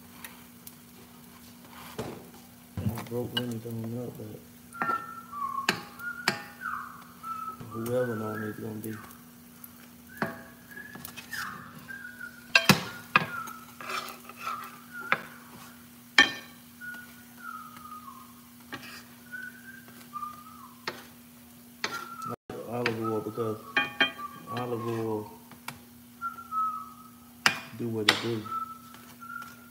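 Metal spatula clicking and scraping against a skillet of frying pancakes, over a steady low hum. A person whistles a tune in short phrases, with a few brief murmurs of voice.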